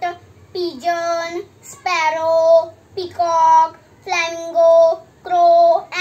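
Green toy parrot giving a repeated electronic call: six near-identical short pitched calls, about one a second.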